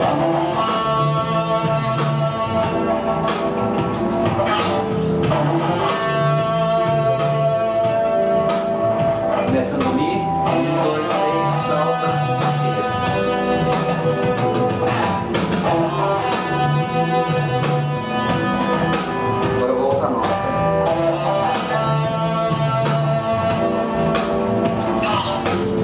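Electric guitar, a Stratocaster-style solid-body, playing single-note melodic phrases built from three stepwise notes and a leap of a third, over a steady accompaniment with a repeating low figure.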